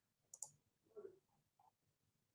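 Near silence: room tone with two faint, short clicks, about half a second and one second in.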